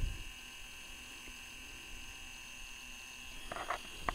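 Dymo LetraTag handheld label maker printing a label, its small feed motor giving a faint, steady high whine.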